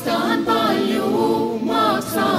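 Choir singing a re-imagined Estonian folk song, with several voices moving together through short sung phrases. There is a brief breath between phrases right at the start and again at the end.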